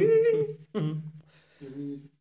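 A man humming short held notes in three brief phrases with pauses between.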